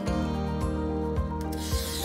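Background music, with a few faint handling clicks and, near the end, a scratchy hiss as a glass cutter starts scoring a sheet of glass along a metal ruler.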